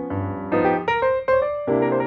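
Background piano music: a slow melody of notes and chords, a new note struck about every half second and left to ring.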